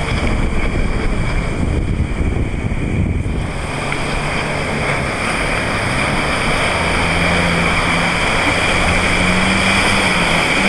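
Stand-up jet ski engine running at speed, its hum becoming steadier and a little higher about halfway through, over a constant hiss of water spray and wind on the microphone.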